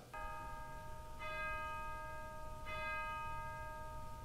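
Soft, sustained bell-like chime tones, with a new chime entering about every second and a half and ringing on over the last.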